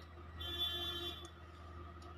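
A short, buzzy, high-pitched tone lasting under a second, starting about half a second in, over a steady low hum.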